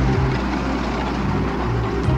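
Sound effect of a big semi truck's engine running steadily as the tractor-trailer drives past.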